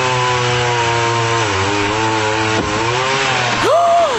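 Chainsaw running at high revs in played-back video audio, its pitch sagging twice as it bogs under load in a cut through a tree limb, with a brief sharp knock about two and a half seconds in. Near the end a person's voice breaks in with a rising-and-falling exclamation.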